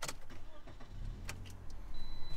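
Ignition of a 2018 Toyota Yaris being switched on: a sharp click at the start and another partway through, with a low steady hum coming on about a second in.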